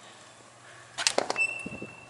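Metal restroom door being unlatched and pushed open: a quick clatter of latch clicks about a second in, then a thin high tone that fades over about a second, with a few dull low knocks.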